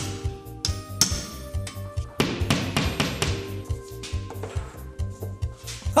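A hammer striking a nail into a wall a few times, over background music with a steady beat.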